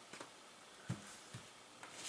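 Quiet room tone with a few faint, short clicks and taps, the most distinct one about a second in, from a laptop being handled on a table.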